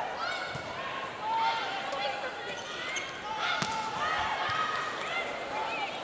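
Sneakers squeaking on an indoor volleyball court during a rally: many short rising-and-falling chirps, with a couple of sharp ball strikes, over a low arena crowd hum.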